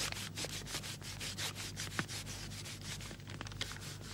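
Cloth and thread rubbing during hand sewing: a quick, irregular run of short scratchy strokes as the needle and thread are pulled through the fabric, over a steady low hum.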